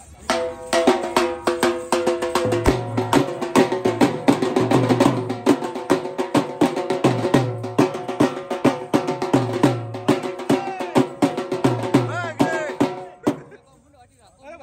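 Dhol drum beaten fast with sticks in a dense, driving rhythm. The drumming stops abruptly about a second before the end.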